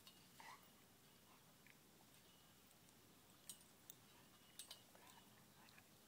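Near silence: outdoor room tone with a few faint, brief clicks and rustles.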